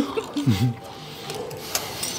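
Knife and fork on porcelain plates during a meal: a brief voiced sound, then low steady room sound with a faint hum, and one sharp clink near the end.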